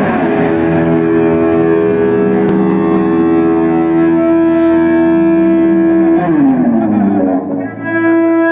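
Electric guitar played with a violin bow through an amplifier: long sustained droning notes. About six seconds in, the pitch sweeps down, then after a brief dip a new note is held near the end.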